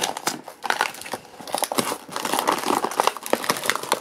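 Toy multipack's card and foil-backed plastic blister packaging being ripped open by hand: a run of sharp crackles, crinkles and tearing, thickening into a dense rustle in the second half.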